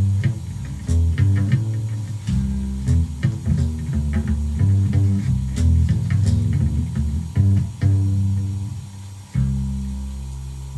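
Homemade electric stick bass built from oak flooring, with two nylon trimmer-line strings and two wound bass strings, plucked in a run of deep bass notes through a small battery-powered Vox amp. A last note is struck near the end and left ringing.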